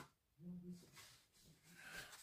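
Near silence: room tone, with a brief faint hum from a man's voice about half a second in.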